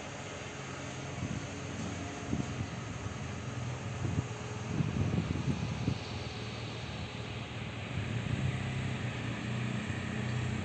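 Single-cylinder engine of a Yamaha XTZ 250 Ténéré motorcycle idling steadily, with a few soft bumps in the first half.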